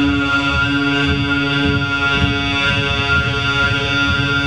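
Throat singing (khoomei): one steady low vocal drone with a whistling overtone held high above it, over a low, uneven rumble.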